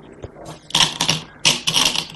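Go stones clicking and rattling as they are handled from a bowl and set on a wooden Go board, in two short clusters of sharp clicks.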